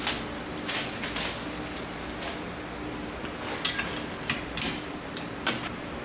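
Windshield wiper arms and blades being handled: scattered light metallic clicks and clacks, about eight over six seconds.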